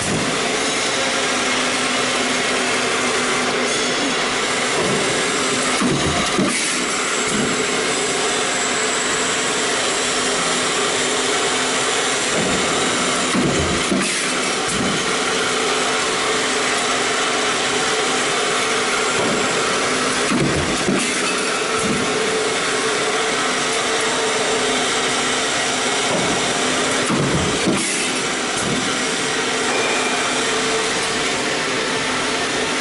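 Stamping press running a progressive deep-drawing die: a steady machine hum with a pair of short clunks roughly every seven seconds as the die strokes.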